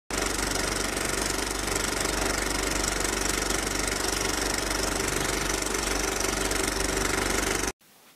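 Film projector running: a steady, rapid mechanical clatter over a low hum, which cuts off suddenly near the end.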